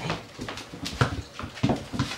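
Rottweiler puppies playing on a tiled floor, with a few short, sudden dog sounds, one about a second in and another near the end.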